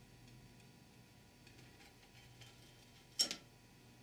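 Quiet handling of Chrysler 46RE automatic transmission clutch plates, with one sharp metallic clink of a plate about three seconds in.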